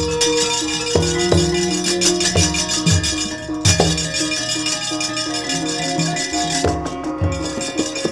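Javanese gamelan ensemble playing, with steady pitched metallophone tones and regular drum strokes, overlaid by a rapid metallic clattering from the dalang's keprak plates that accompanies the puppet's movement and thins out near the end.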